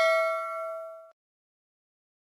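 Notification-bell ding sound effect from a subscribe-button animation, a bright metallic chime ringing on and fading, then cut off abruptly about a second in.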